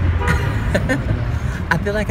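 Steady low rumble of a car's interior while driving on city streets, with voices talking in the car.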